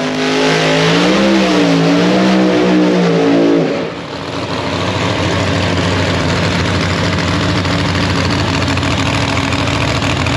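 Chevrolet Nova no-prep drag car's engine being revved, its pitch rising and falling for the first few seconds, then dropping back and running steadily at a lower idle.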